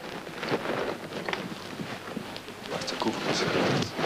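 Muffled rustling and handling noise, with faint indistinct voices, picked up by a camera hidden in a carried bag.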